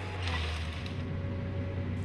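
Timberjack wheeled forestry harvester running, a steady low engine hum with its hydraulics working the harvester head.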